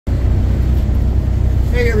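Steady low rumble of a car travelling at highway speed, heard from inside the cabin. A woman's voice starts right at the end.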